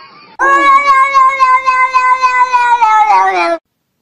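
A cat's long, loud yowl, starting about half a second in and held at one steady pitch for about three seconds, sagging slightly near the end before it cuts off suddenly.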